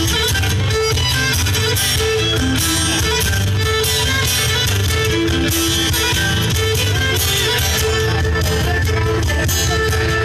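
Live acoustic band playing an instrumental passage without singing: acoustic guitars strumming, a cajon keeping the beat, and a violin playing the melody in held notes.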